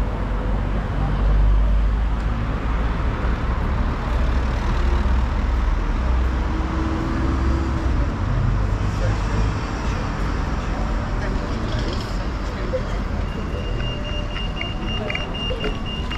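Busy town-centre street: a low rumble of road traffic under the chatter of passers-by. A little over 13 seconds in, a pedestrian crossing's signal starts sounding a high steady tone.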